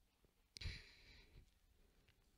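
A single breath exhaled close to a handheld microphone, starting suddenly about half a second in and fading within half a second; otherwise near silence.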